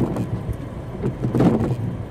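Car cabin sound while stopped in traffic: the engine idling with a steady low hum, as the windshield wipers sweep the rain-wet windshield.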